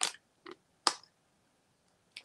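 Three brief crunches of an airy Bamba peanut butter puff being chewed, within the first second, then nothing: the puff dissolves in the mouth almost at once.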